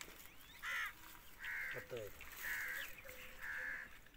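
A crow cawing four times, about once a second. A short voice is heard briefly in the middle.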